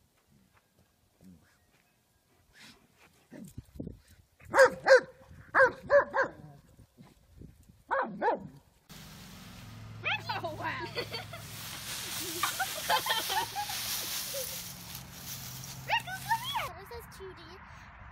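A dog barking, a string of short sharp barks between about four and eight seconds in. After that a steady rustling noise with children's voices takes over.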